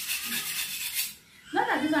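A kitchen knife blade scraped against another piece of metal, a rasping stroke that stops about a second in. A woman's voice follows near the end.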